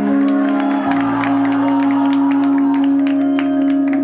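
Live band music: a long held chord with quick, light percussion taps over it and no singing.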